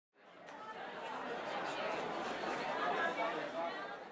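Indistinct murmur of many people talking at once in a large hall, fading in over the first second.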